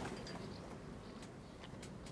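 Faint steady background noise with a few light clicks near the end.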